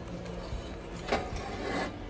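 Quiet background music, with a couple of soft scrapes and knocks as a vintage metal milk can is lifted off a metal store shelf, one about half a second in and one just after a second in.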